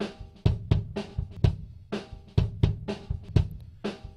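Raw, un-EQ'd kick drum track from a microphone placed inside the drum, playing a beat of about ten hits, with snare and cymbal strikes also heard. The sound is boxy in the midrange, and two pitched, cowbell-like rings from reflections inside the shell sustain under the hits.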